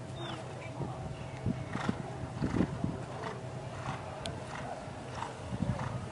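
A dressage horse trotting on a sand arena: muffled hoofbeats at an even rhythm, a stroke roughly every two-thirds of a second.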